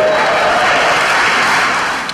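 Audience applauding: a dense, even clatter of many hands clapping that tapers off near the end.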